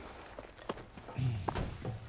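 Film soundtrack: quiet background music with a few scattered footsteps.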